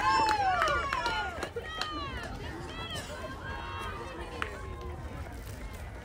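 Several high-pitched voices of softball players shouting and cheering as the third out ends the inning, loudest in the first second or so, then dying down to scattered calls.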